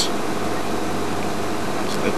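Game-drive vehicle's engine idling: a steady even hiss with a low hum underneath.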